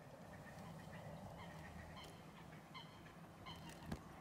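Faint bird calls, a handful of short notes, over a low steady background hum.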